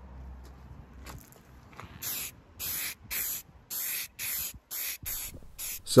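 Spray paint hissing out in short bursts, about nine in quick succession starting some two seconds in, as a heater box is painted black.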